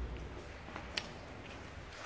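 Handling noise of rusty metal engine parts, with a low thump at the start and a single sharp metallic clink about a second in.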